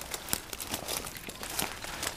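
Footsteps pushing through tall, dry dead grass and brush, with irregular crackling and rustling of the stems.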